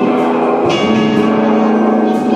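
Psychedelic rock trio playing live: electric guitar, keyboards and drums in a passage of held chords, with a sudden cymbal-crashed accent about two-thirds of a second in.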